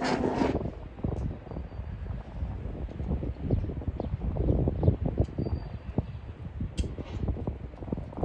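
Wind buffeting the phone's microphone: an uneven low rumble in gusts, with a brief louder rush at the start.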